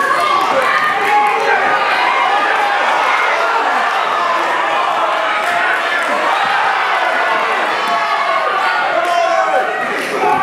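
A crowd of spectators shouting and cheering steadily in a large hall, many voices overlapping, during a boxing bout. Occasional thuds of gloved punches or feet on the ring canvas come through underneath.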